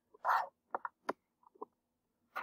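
A brief vocal sound from the narrator, then a few quiet clicks of a computer mouse.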